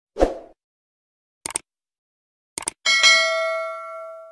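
Subscribe-button animation sound effects: a short soft pop, two quick double mouse clicks about a second apart, then a bell ding whose ringing fades away.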